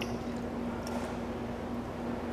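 Quiet room tone with a steady low electrical hum and a faint tick about a second in.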